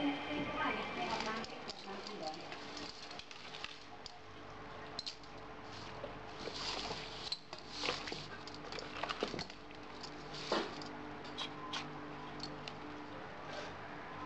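Raw wet meat and chicken feet being handled and turned in a stainless steel bowl, with a knife clicking against the metal: irregular light clinks and wet squishing.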